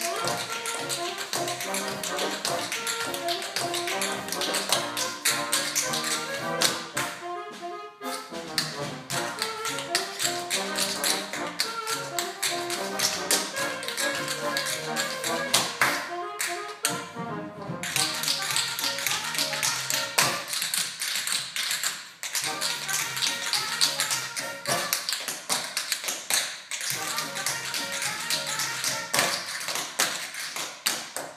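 Tap shoes striking a stage floor in fast rhythmic runs of taps, over a band accompaniment, with two short breaks in the tapping.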